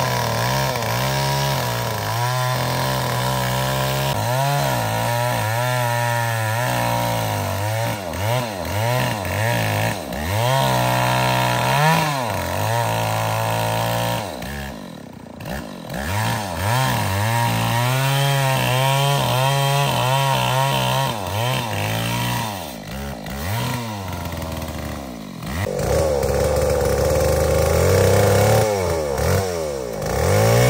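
Two-stroke chainsaw cutting into a durian tree trunk, its engine pitch rising and falling over and over as the chain bites and frees in the wood. It eases off twice, around the middle and again a few seconds later, then runs steadily at speed near the end.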